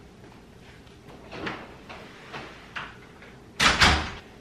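A few faint footsteps, then a door banging shut near the end: two sharp knocks close together.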